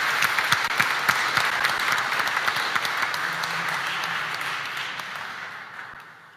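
Congregation applauding, many hands clapping together, the clapping dying away over the last second or so.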